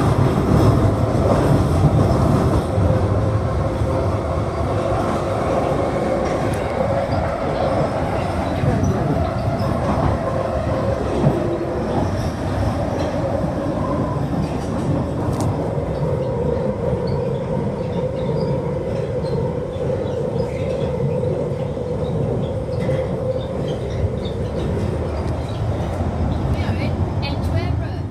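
London Underground tube train running through a tunnel, heard from inside the carriage. It is a loud, steady rumble of wheels on rail with a continuous droning tone.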